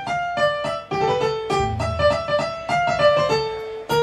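Boogie-woogie piano played live: a quick run of separately struck notes in the treble over lower bass notes, with no singing.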